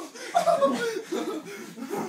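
People chuckling and laughing, with snatches of speech mixed in. The loudest burst of laughter comes about half a second in.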